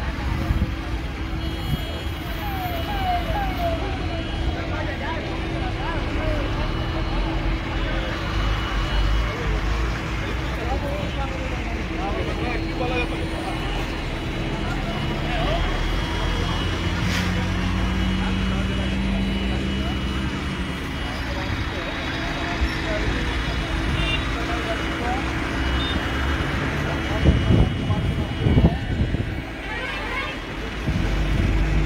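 Heavy vehicle engines running and roadway traffic, a steady low rumble with a constant hum, under background chatter of bystanders' voices. A held engine note rises in the middle, and a few sharp thumps come near the end.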